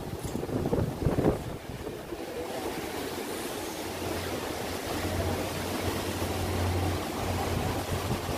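Wind and water rushing past a river tour boat, with a few gusts on the microphone about a second in. A steady low engine hum from the boat comes up and grows stronger from about halfway through.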